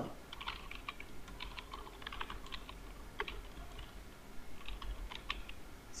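Typing on a computer keyboard: a run of irregular keystrokes with a short pause partway through.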